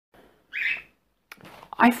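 A single short chirp from a pet cockatiel, about half a second in and under half a second long.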